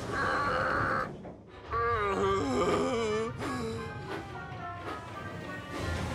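A short hiss lasting about a second, then a cartoon steam engine character's strained, wordless groaning as it labours uphill, over background music.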